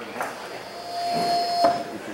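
A steady pitched tone for about a second, over faint room noise.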